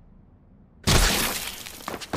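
A sudden loud crash with the sound of glass shattering, starting about a second in and fading away over the following second.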